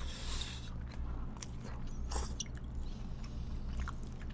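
Close-miked eating of Korean cold noodles (naengmyeon): noodles slurped and chewed in short noisy bursts, one near the start and another about halfway, with a few small clicks. A steady low hum runs underneath.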